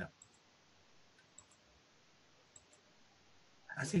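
A few faint, sharp computer mouse clicks spread across a few seconds over quiet room tone.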